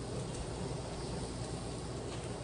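A steady hiss over a low rumble, with no distinct knocks or clatter.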